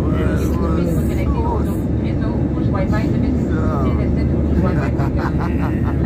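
Steady roar of an airliner's turbofan engines heard inside the cabin in flight, with a cabin public-address announcement in French over it.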